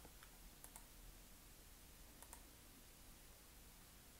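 Near silence with a few faint computer mouse clicks, the clearest a little over two seconds in, as the Play button is clicked.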